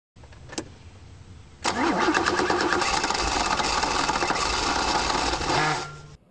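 A car engine starts with a sudden loud burst about one and a half seconds in. It then runs with revs wavering up and down and cuts off abruptly near the end. A single click comes shortly before the start.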